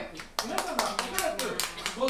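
Audience hand clapping: a quick, fairly even run of claps starting about half a second in, with voices talking over it.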